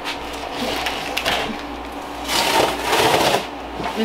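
Cardboard boxes scraping and rustling against each other as one is slid and lifted off a stacked pallet, loudest for about a second past the middle.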